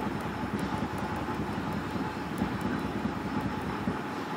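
Steady background noise: a low rumble with hiss, with no distinct event.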